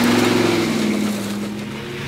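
A motor vehicle driving: an engine tone under loud rushing road noise, easing off a little in the second half.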